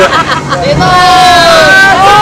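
A person's voice speaking Vietnamese, drawing out one long, slightly falling vowel for about a second, over a steady rushing background noise.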